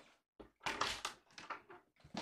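Irregular rustling and soft knocks from a person moving right by the microphone, the loudest about a second in.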